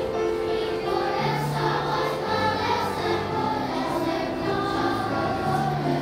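Children's choir singing a song together, voices holding long notes over a low accompaniment.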